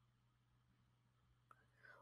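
Near silence: faint room tone with a steady low hum and a single faint click about one and a half seconds in.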